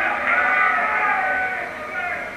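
People's voices calling out in long, wavering tones in a boxing hall, sounding muffled.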